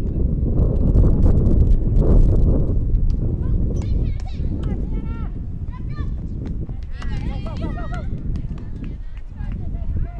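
Wind rumbling on the microphone, loudest in the first few seconds, then high-pitched shouting and cheering from softball players and spectators from about the middle on.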